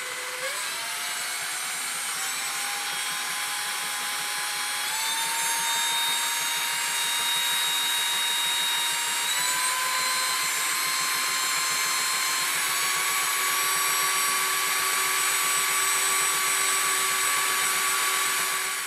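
Electric drill spinning a magnetically levitated flywheel alternator up to speed: a steady motor whine that steps up in pitch several times as the drill speeds up.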